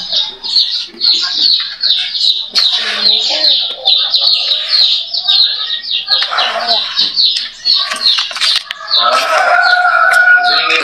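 Small birds chirping continuously: short, high, falling chirps, several a second, with no break.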